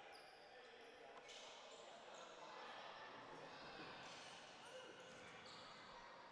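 Near silence: faint gymnasium ambience with distant, murmuring voices.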